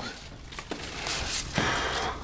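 Tomato leaves and stems rustling as they are handled, with a soft click about two-thirds of a second in.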